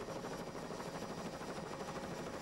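Helicopter running close by: a steady, fast chop of rotor blades.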